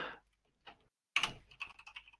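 Computer keyboard typing: a few faint, scattered keystrokes, with a short run of them a little past the middle.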